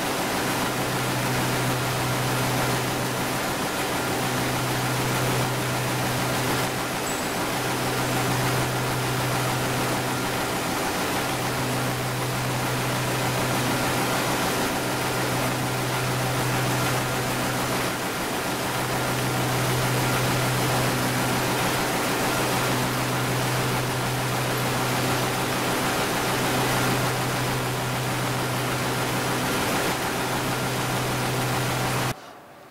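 W+D 410i envelope converting machine running in production: a steady rushing machine noise with a constant low hum underneath.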